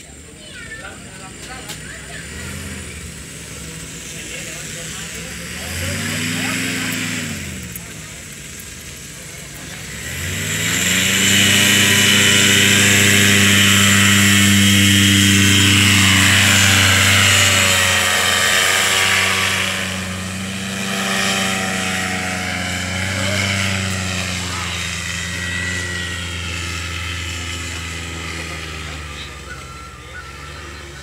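Paramotor engine and propeller running up for a takeoff: a brief rise and fall in revs about six seconds in, then full power from about ten seconds in, loudest for several seconds with a drop in pitch as it passes. After that it fades gradually as it climbs away.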